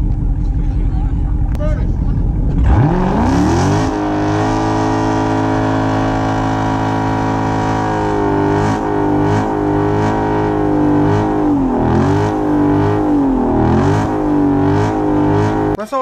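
Dodge Charger Daytona 392's 6.4-litre Hemi V8 doing a burnout. It starts with a low rumble, revs up about three seconds in and is held at high rpm while the rear tyres spin. Its pitch dips and recovers a few times, then it cuts off suddenly near the end.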